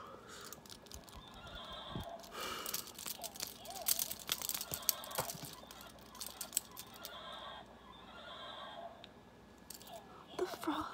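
A person making breathy, wavering mouth and voice sounds close to the microphone, twice, with sharp crackling clicks from a crumpled wrapper squeezed in the hand.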